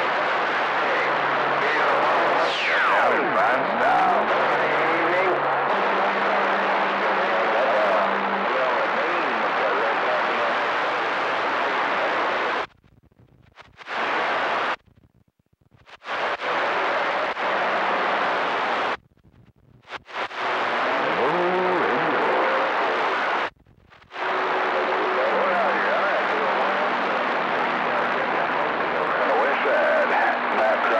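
CB radio receiver on channel 28 picking up long-distance skip: loud static hiss with steady low carrier tones, a whistle sliding down in pitch early on, and garbled, unreadable voices buried in the noise. The receiver goes silent four times as transmissions drop and the squelch closes, then the static returns.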